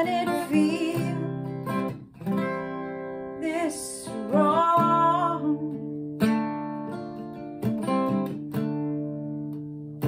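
Capoed cutaway acoustic guitar strummed in slow chords, each struck every second or two and left ringing, with a woman's voice singing a short held line near the middle.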